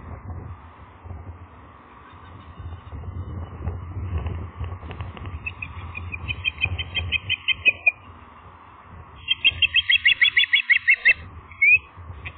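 Ospreys calling: two runs of rapid, high, repeated chirps at about seven a second, the second run louder, then one short rising note near the end, over a low steady rumble.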